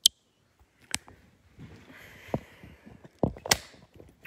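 Handling noise from the camera being turned around and repositioned: a sharp click at the start, another click about a second in, light rustling, then a few knocks and clicks near the end.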